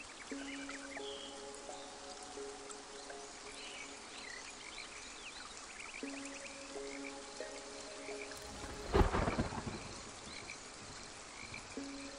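Night rainforest ambience of frogs calling, with a sudden loud clap of thunder about nine seconds in that rumbles off over a second. Soft, sustained ambient music chords sound underneath.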